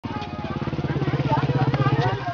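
A small engine running steadily with a fast, even pulse, cutting in suddenly, with children's voices over it.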